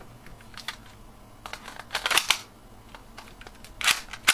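Plastic parts of a broken clear plastic toy pistol clicking and clacking as they are handled: a few light clicks, a cluster of louder clacks about halfway through, and another sharp clack near the end.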